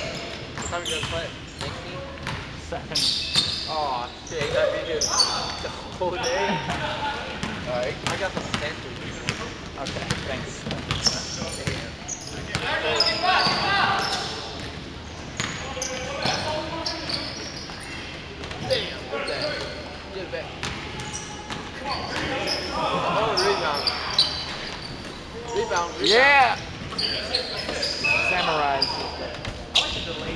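Basketball game in a large gym: the ball bouncing on the hardwood court again and again, with players' voices calling out over the play.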